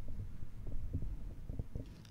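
Microphone handling noise: a low rumble with soft, irregular thumps that starts suddenly and dies away near the end.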